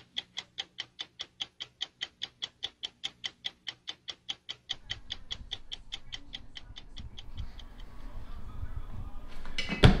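Stopwatch ticking, a steady run of about five ticks a second, that stops about five seconds in. Then comes a low rumble of room noise and one sharp knock just before the end.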